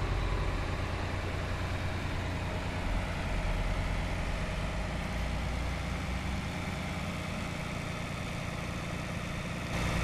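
Farm tractor's engine running steadily at low revs.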